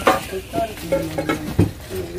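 Plastic bags crinkling as brass wares are handled, with a sharp metallic knock at the start and another about one and a half seconds in.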